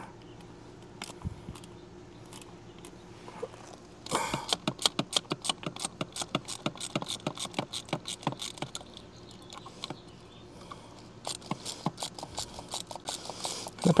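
Quick runs of light clicking from a Rain Bird 100-HV plastic sprinkler valve being worked by hand at its solenoid. The clicking starts about four seconds in, stops for a moment, then resumes near the end.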